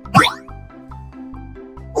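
A short cartoon sound effect with a quick sliding pitch, loudest just after the start, over light children's background music with a steady, repeating bass pattern.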